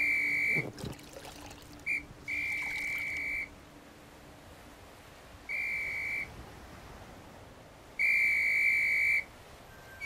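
A whistle blown in separate steady blasts, each holding one pitch: the tail of one blast, a short pip about two seconds in, then three more blasts of about a second each with pauses between. The blasts are a signal sounded by a downed crew adrift in a life raft. A soft wash of water runs underneath.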